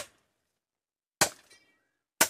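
Machete chopping firewood: a sharp strike of the blade into wood about a second in, followed by a brief metallic ring from the blade.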